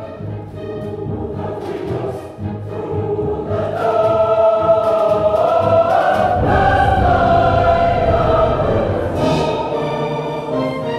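Live choir singing long, held notes with orchestral accompaniment, growing louder about four seconds in.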